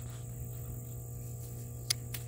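Steady high-pitched insect buzz over a low steady hum, with a single sharp click of hand pruners near the end.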